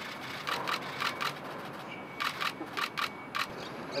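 Camera shutters clicking in two quick bursts of four or five clicks each.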